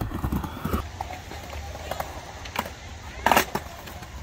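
Skateboard wheels rolling on a skatepark ramp, a low rumble, broken by a few sharp clacks of the board; the loudest clatter comes a little past three seconds in.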